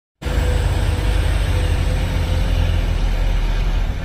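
Heavy diesel truck engine pulling a loaded tank-container trailer uphill: a steady low rumble with a thin steady whine above it.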